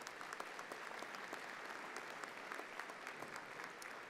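Audience applauding, many hands clapping in a steady patter that eases slightly near the end.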